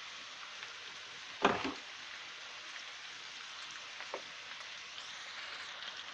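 Minced beef, garlic and tomato frying in oil in a wok: a steady sizzle throughout. A brief louder sound cuts in about one and a half seconds in.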